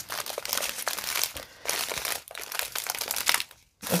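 Small clear plastic zip-top bags of diamond painting drills crinkling and rustling as they are handled and shuffled, dying away shortly before the end.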